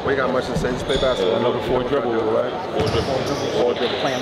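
Basketballs bouncing irregularly on a gym court, with people talking in the background.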